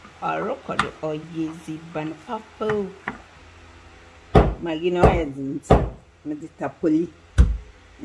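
Wooden pestle pounding in a wooden mortar on a stone counter: four heavy thuds in the second half, a little under a second apart and then after a longer gap.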